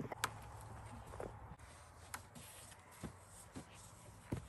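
Faint footsteps of people walking, a soft step about once a second.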